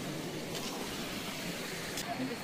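Steady rush of water spilling over the rocks of a low waterfall into a shallow stream pool.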